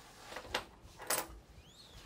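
Sheets of paper being handled and set down on a table: two short rustles, about half a second and a second in.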